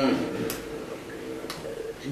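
A man's voice trails off, then a pause of quiet room tone broken by two sharp ticks about a second apart.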